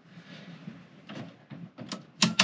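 Faint handling noise from hands working at an RV's electrical panel and wiring, with a few light clicks in the second half, sharpest near the end.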